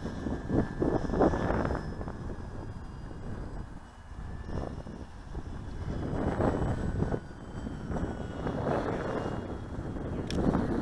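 Distant electric RC model plane, an E-flite P-51 Mustang, flying: its motor and propeller give a thin whine that wavers a little in pitch, over wind rumble on the microphone.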